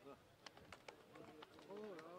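Near silence: faint voices in the background, with a few light clicks, and a curving voice near the end.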